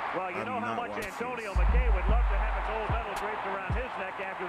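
Speech throughout, with several low, dull thumps in the second half; the loudest comes a little past halfway.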